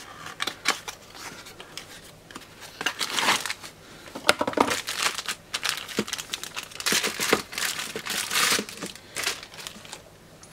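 Packaging being unwrapped by hand: a small cardboard box opened and a clear plastic bag crinkling as a battery test jig is pulled out of it, in irregular rustles and clicks.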